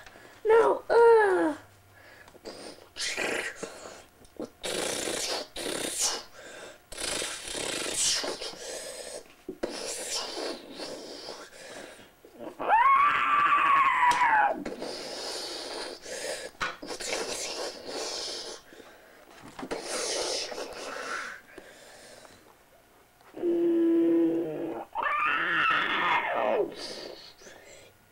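A child's voice making monster and battle sound effects by mouth: growling roars and several long howls that rise and fall in pitch, with bursts of hissing, rushing noise between them.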